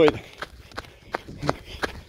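Running footfalls of sandals on a dirt road, an even rhythm of sharp slaps at about three steps a second.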